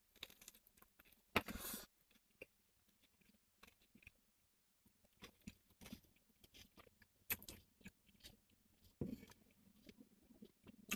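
Biting into and chewing a crisp nori-wrapped soft-shell crab hand roll: mostly faint, scattered crunches and wet mouth clicks. The loudest crunch comes about a second and a half in, with further crunches around seven and nine seconds in.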